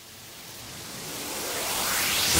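Noise riser opening a house track: a hiss-like swell of noise that grows steadily louder throughout.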